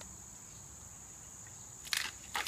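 Steady high-pitched chirring of insects, crickets or similar, in the background, with a short clatter near the end as ice cubes are tipped from a plastic tray into a plastic bucket.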